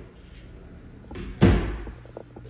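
A single loud bang about a second and a half in, dying away quickly.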